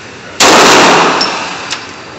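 A Beretta 92FS 9 mm pistol fires one shot about half a second in. The blast clips the recording and rings out in the indoor range for about a second, and a short sharp tick follows near the end.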